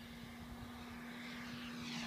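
A radio-controlled Ultraflash model jet flying in toward the listener: a steady hum under a rushing hiss that grows louder toward the end as it comes close.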